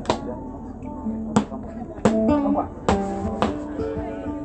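Live kaneka band striking up: held guitar notes begin about a second in, over a few sharp, unevenly spaced percussion hits.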